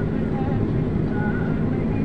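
Steady low rumble of a vehicle's engine and road noise, heard from on board the moving vehicle.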